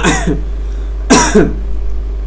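A man's single brief vocal burst, a short cough-like sound about a second in, over a steady low hum.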